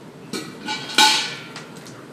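Steel pail set down: a couple of light knocks, then a loud metallic clank about a second in that rings briefly.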